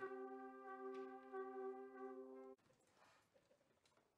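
Brass band holding a soft, steady chord that cuts off suddenly about two and a half seconds in.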